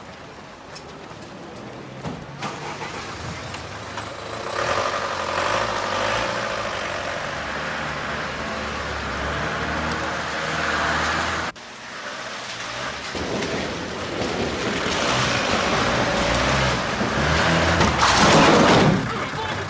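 Panel van engine running and driving off, the sound building until it is loudest as the van passes close near the end.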